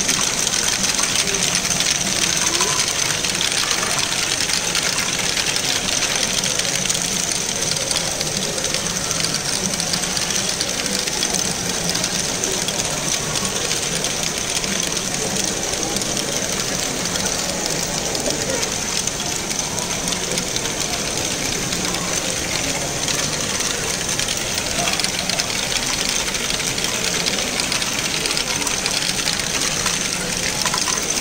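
Many motorised LEGO Great Ball Contraption modules running at once: a steady, dense clatter of small plastic balls rattling through lifts, conveyors and chutes, with the fine ticking of LEGO gears and mechanisms.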